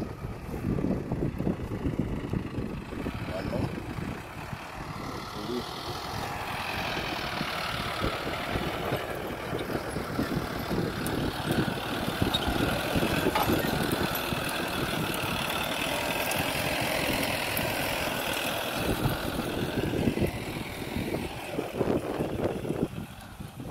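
Tractor engine running steadily as it pulls a disc plough through the soil.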